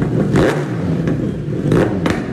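Kawasaki motorcycle engine running in a workshop, blipped twice: about half a second in and again near the end.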